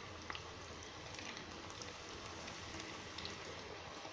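Cabbage bonda fritters deep-frying in a pan of hot oil: a faint, steady sizzle with scattered small crackles.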